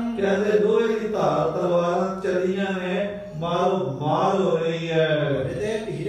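A man chanting a verse in long, held notes, changing pitch slowly, with brief breaks between phrases.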